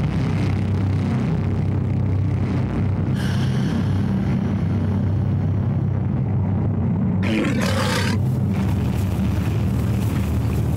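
Film soundtrack of a loud, steady low rumbling drone, with a brief higher, wavering sound about seven seconds in.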